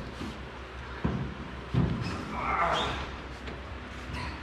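Two short thumps a little under a second apart, a man's feet and weight landing on an El Camino's sheet-metal bed floor as he climbs into the bed.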